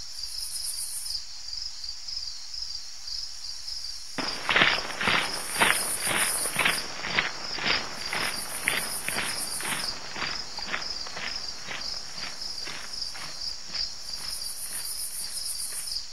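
Night insects chirring steadily, with louder high trills switching on and off every second or two. About four seconds in, footsteps begin at about two a second, loudest at first and fading away over the next ten seconds.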